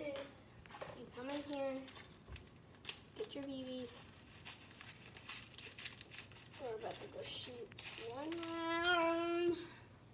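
Clicks and rattles of a toy gun and its plastic shell casings being handled, with several wordless pitched vocal sounds, the longest near the end.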